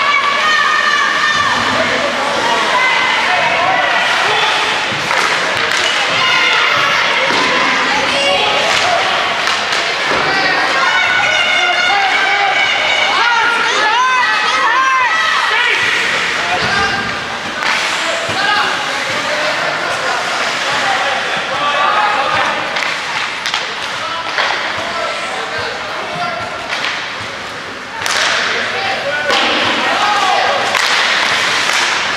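Sounds of an ice hockey game in an indoor rink: repeated thuds and clacks of puck, sticks and boards, with voices calling and shouting across the ice.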